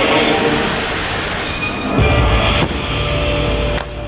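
Show soundtrack music over the deep rumble of fireworks and flame bursts from the show barge, swelling about two seconds in, with a sharp crack shortly after.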